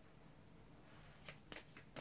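Tarot cards being handled: a few short, sharp card clicks and flicks in the second half, after a near-silent first second.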